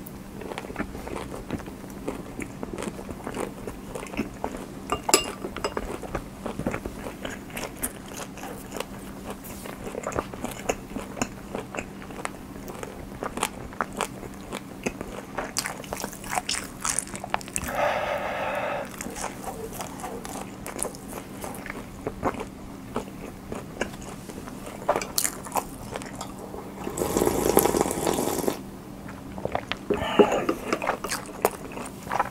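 Close-up eating sounds of cold ramen noodles being slurped and chewed: many small wet mouth clicks, a short slurp about halfway and a longer, louder slurp near the end. A faint steady low hum runs underneath.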